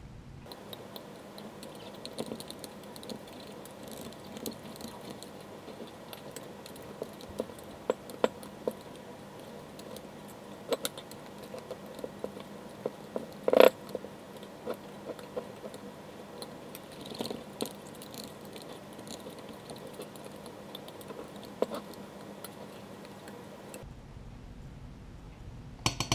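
Scattered light clicks and clinks of a thin utensil against the inside of glass mason jars as it is worked down through packed peppers in brine to free trapped air bubbles, with one louder knock about halfway through.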